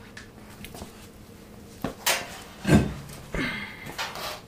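Heavy wide steel wheel and tyre being pulled off a car's front hub: a few knocks and scrapes, then a loud thud nearly three seconds in as it comes free, followed by rubbing as the tyre is handled.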